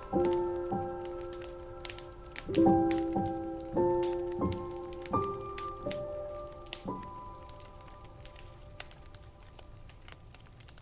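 Slow solo piano music: single notes and soft chords struck roughly once a second, each left to ring and die away, thinning out and fading over the last few seconds. Scattered faint clicks and crackle run underneath.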